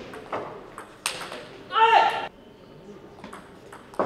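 Table tennis rally: the celluloid-type ball clicking sharply off the bats and the table, several quick clicks a second, echoing in a large hall. About two seconds in comes a loud, high, pitched squeal lasting about half a second.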